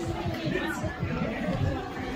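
Indistinct voices and chatter in a large indoor hall, with no clear sound besides talk.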